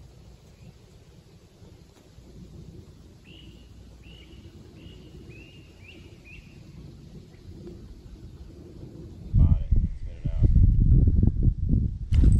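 Riverside outdoor ambience: a faint low rumble with a bird calling a run of about six short, high notes about half a second apart. About three seconds before the end a much louder low rumble starts suddenly and lasts to the end.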